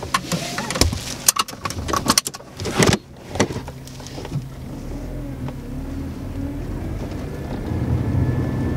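Car seatbelts being pulled across and buckled: a quick run of clicks, knocks and rustles over the first three seconds. Then the car's engine and road noise set in as a steady low rumble that slowly grows as the car drives off.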